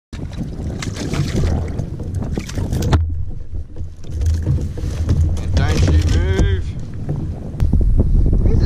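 Strong wind buffeting the microphone of a kayak-mounted camera, a heavy low rumble with scattered knocks. There is a short wordless voice sound about six seconds in, and the wind gets louder near the end.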